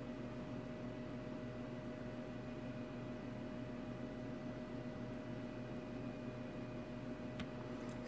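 Faint steady background hum and hiss, with a few constant tones, and one faint click near the end.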